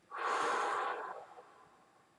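A man taking one deep breath: a single loud rush of air, about a second long, that fades away.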